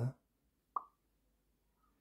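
ScratchJr app's short pop sound effect on an iPad, played once about three quarters of a second in as a programming block snaps into place on the script.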